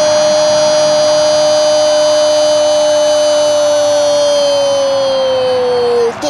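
Brazilian football commentator's drawn-out goal cry, "gooool", held as one long loud note that sags in pitch toward the end.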